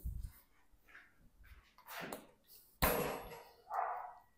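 Handling noise and one sharp knock about three seconds in as a plastic bar-end cap is fitted into the end of a handlebar grip.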